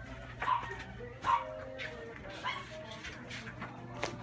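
A dog barking in short separate barks, about five in all; the two loudest come in the first second and a half. A steady low hum runs underneath.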